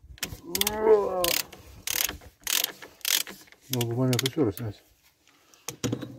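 Ratchet handle clicking as it turns a cup-type oil filter remover that is screwed onto a stuck oil filter. It gives several rasping ratchet strokes about half a second apart.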